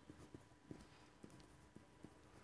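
Near silence with faint, irregular soft taps and scratches of a pen writing on paper, several a second.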